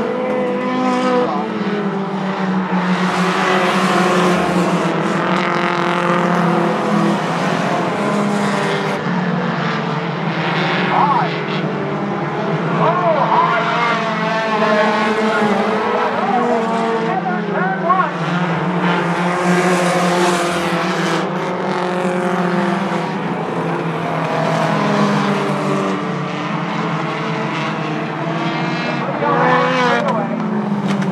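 Several four-cylinder compact stock cars racing on a short oval. Their engines run together at changing revs, with layered engine notes rising and falling as the pack goes round.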